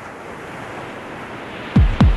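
A steady rushing noise like surf, faded up under an opening title. Near the end a deep bass hit falls sharply in pitch as the music begins.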